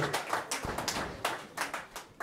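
Audience clapping after a song: scattered hand claps that thin out and fade away.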